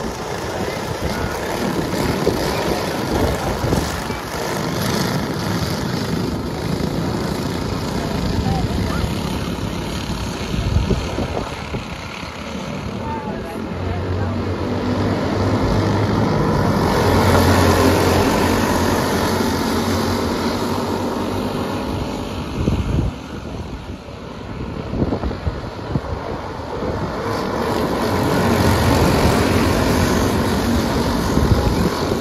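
A field of racing kart engines running on a dirt oval. The sound is continuous and swells louder around the middle and again near the end.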